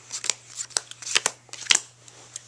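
Playing cards being dealt by hand onto four piles: a quick series of sharp card snaps and flicks, the sharpest near the end.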